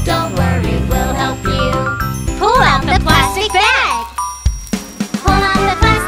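Children's song: chiming, jingly backing music with a sung lyric line. Near the middle come two swooping up-and-down pitch glides and a short dip, and then the song picks up again.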